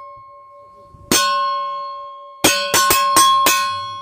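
Old rusty circular saw blade, held up by hand and struck with a metal tool, ringing with a clear, lasting tone: one strike about a second in, then a quick run of five strikes. This clear ring is the 'tinido' test that marks the blade's steel as good for making knives.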